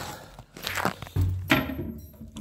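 Plastic toilet seat being worked onto its hinge mounts: a scrape, a dull knock and then a sharp click.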